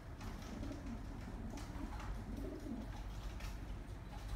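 Racing pigeon cooing: two low, rolling coos, one in the first second and another a little past the middle, with a few faint clicks from handling.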